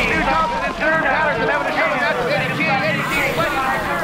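Speech: a man's voice commentating on a BMX race, the words unclear.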